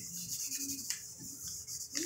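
Hands rubbing kinesiology tape down onto the skin of the foot and ankle: a soft, continuous scratchy friction.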